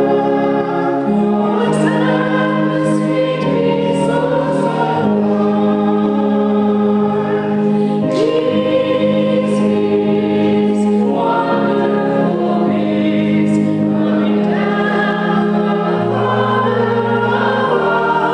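A congregation singing a hymn together, with a woman's voice leading, over steady held organ chords that change every second or two.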